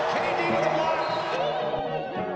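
Intro of a hip-hop instrumental beat built on a sampled vocal passage: a dense, reverberant sound with wavering sung pitches. The fuller, brighter part thins out about one and a half seconds in.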